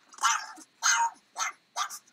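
A pug giving four short, sharp yelps in quick succession.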